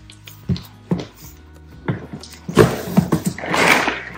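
Soft background music, with a few light knocks, then a loud rustle of packing being disturbed as a large plastic container is pulled out of a cardboard box, starting about two and a half seconds in.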